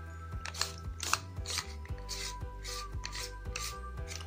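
Stainless steel murukku press being handled and its threaded cap turned on: a series of light, irregular metal scrapes and clicks.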